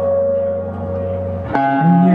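Live indie folk music between sung lines: acoustic guitar and a low held note ring on a sustained chord, then a new chord is struck about one and a half seconds in.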